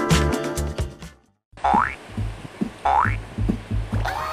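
Background music for an edited video. It cuts out briefly about a second in, then a new upbeat track starts with a steady beat and two short rising 'boing'-like sound effects.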